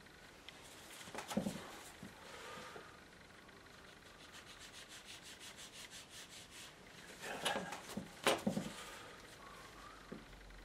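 Tissue and brush rubbing on watercolour paper. There is a rubbing noise early on, then a fast, even run of short brush strokes, several a second, and a few louder scuffs near the end.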